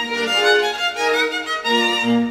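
Background music: a solo violin playing a melody of bowed, sustained notes that change pitch every fraction of a second.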